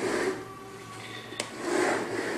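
Handling noise: two soft rubbing swells, one at the start and one near the end, with a single sharp click about a second and a half in.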